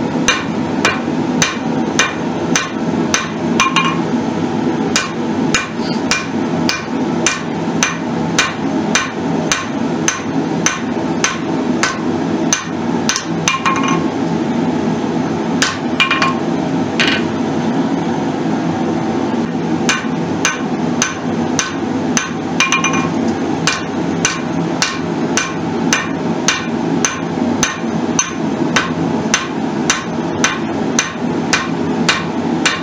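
Hand hammer striking red-hot steel on an anvil, about two blows a second, each with a short metallic ring: forging out the blade of a tomahawk head. About halfway through the blows thin out to a few scattered strikes, then the steady hammering resumes.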